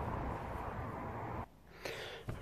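Steady low background hum and hiss that cuts off suddenly about one and a half seconds in.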